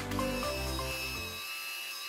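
Background music with piano-like notes that fades out a little past halfway. Under it, and left alone after the fade, is a steady high-pitched whine that fits the small motor of a battery-powered spinning facial cleansing brush at work.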